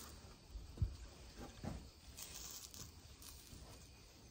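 An egg frying in a hot stainless steel skillet: a faint, irregular sizzle and crackle, with a soft thump about a second in.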